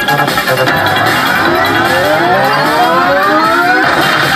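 WMS Nordic Spirit slot machine's big-win celebration music as the win meter counts up, with a stack of rising tones climbing steadily in pitch for about three seconds. The rise breaks off just before the end as the win level steps up to Super Big Win.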